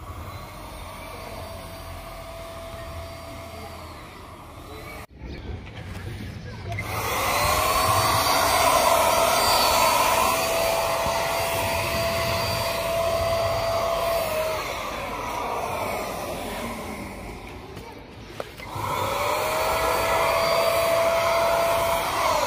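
Handheld electric paint spray gun spraying paint onto a steel gate panel. Its motor whines up to a steady pitch with a hiss of spray, runs for about eight seconds, winds down, and starts up again about three seconds before the end. A fainter, shorter run comes in the first few seconds.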